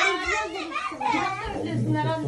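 Several children's voices talking and calling out over one another.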